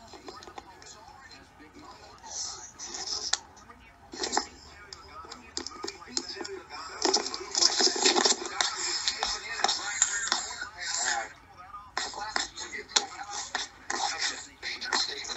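Sports television broadcast playing in a room through the TV's speakers: voices with music underneath, busiest in the middle of the stretch.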